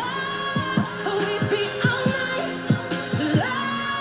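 A woman singing a slow, seductive pop song over its backing track, holding long notes, played back from a TV broadcast.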